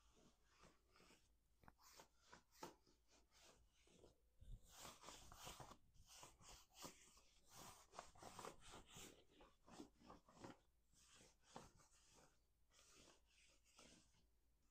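Bare hands patting and rubbing down the legs of denim jeans: faint, irregular soft brushing and light pats, close to the microphone.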